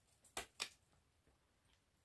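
Two short, sharp clicks about a quarter of a second apart, from small hard objects being handled.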